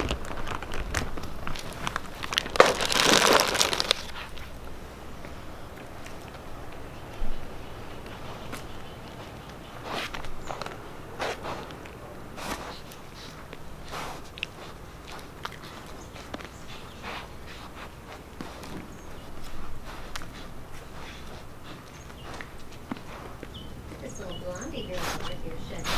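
Deer close around a low-mounted camera, nosing at it: scattered short clicks, taps and rustles, with a louder rushing burst about three seconds in.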